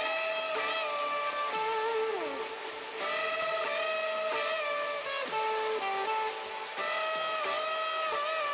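Telecaster-style electric guitar strumming chords that are left to ring, with a new strum about every one and a half to two seconds. About two seconds in, a note slides down in pitch.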